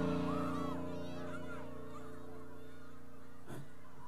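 A sustained electric-keyboard chord ringing on at the end of a song, fading a little in the first second and then holding. Shrill shouts and calls from the audience ride over it in the first couple of seconds.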